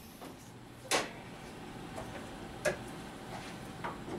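2012 Honda Accord's hood release pulled, the hood latch popping with a sharp click about a second in, then two fainter clicks over a low steady background.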